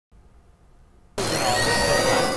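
Near silence, then about a second in a loud whooshing intro sound effect starts suddenly, with several tones gliding up and down in pitch.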